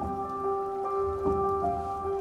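Gentle background music: sustained pitched notes, with a new note entering every half second or so.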